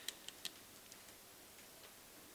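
A few faint, sharp clicks in the first half second, then near silence: room tone.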